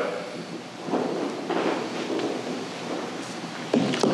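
Steady room noise in a meeting room, a hiss with faint shuffling and rustling and no clear speech.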